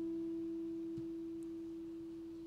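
The last note of an acoustic guitar ringing out after the final strum and slowly fading, leaving one clear, pure tone.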